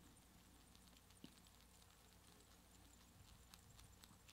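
Near silence: quiet room tone with a low hum and a few faint, scattered clicks.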